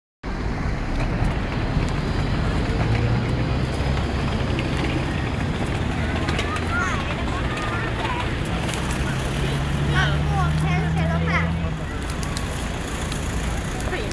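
Street ambience: a vehicle engine runs steadily with a low hum that shifts pitch about eight seconds in and fades near the end, over a haze of road traffic. People's voices talk and call in the background.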